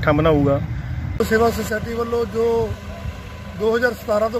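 Two men talking in Punjabi, one after the other with a short break about a second in, over the steady low running of a tractor engine.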